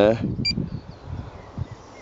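A single short electronic beep from an LTL Acorn 5210A trail camera's keypad about half a second in, as a button is pressed to step back to the previous recorded clip. Faint low rumble of wind and handling follows.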